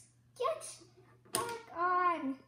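A child's voice making two short wordless sounds, a brief one before halfway and a longer one near the end.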